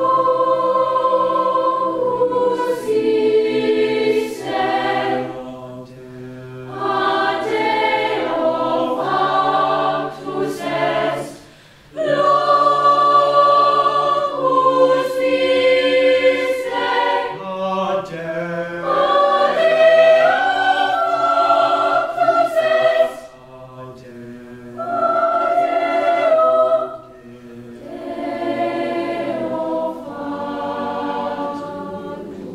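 Mixed youth choir singing together, coming in after a silence and moving through sustained chords in phrases broken by short breaths and pauses.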